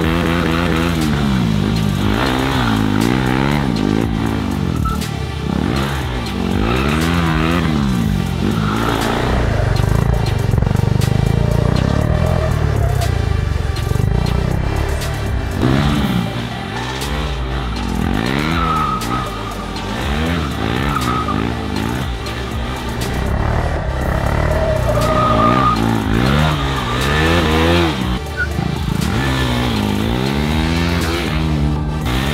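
KTM RC 390's 373 cc single-cylinder engine revving up and down over and over as the bike is drifted, the rear tyre spinning and sliding, with tyre squeal at times.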